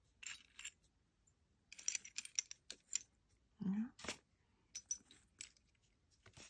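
Seashells clicking and clacking against one another as they are picked up, set down and shifted by hand on a fabric-covered board: scattered light clicks, with a quick cluster about two seconds in.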